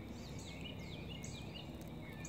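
Several birds calling in the background: a scattered run of short chirps and downward-sweeping whistles, over steady low background noise.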